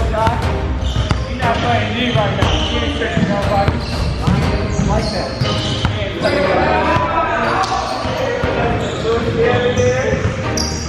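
Basketball being dribbled on a hardwood gym floor, bouncing repeatedly, with a voice running over it throughout.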